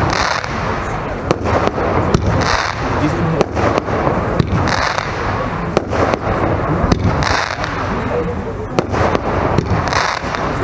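Weco Höllenblitz fireworks battery firing. Its crackling fountain pot fizzes and crackles throughout, and a shot launches about every two and a half seconds, each followed by pops and crackles.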